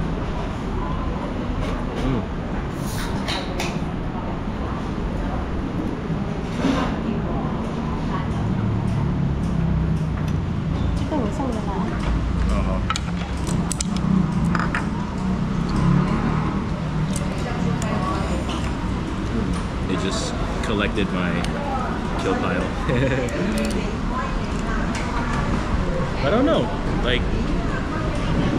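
Eating-house ambience: background chatter of other diners over a steady low rumble, with occasional sharp clicks as crab shell is picked apart at the table.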